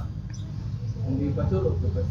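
Quiet men's voices talking low over a steady low background rumble, with a faint high squeak about half a second in.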